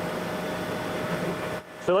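Willemin-Macodel 408MT CNC mill-turn machine running: a steady whirring noise with a faint steady hum tone, which stops abruptly near the end.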